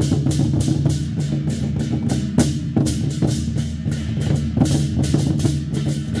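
Chinese war drums (zhan gu) beaten together in a driving, steady rhythm, with large hand cymbals clashing several times a second over the drumming.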